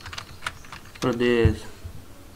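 A few laptop keyboard keystrokes, clicking sharply in the first half second, then a short spoken sound about a second in.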